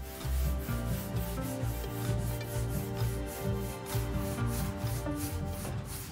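A rag rubbed back and forth across a plywood board, wiping on wood stain in repeated strokes, over background music.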